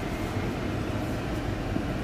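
Car engine and road noise heard from inside the cabin, a steady low rumble as the car creeps into a parking space.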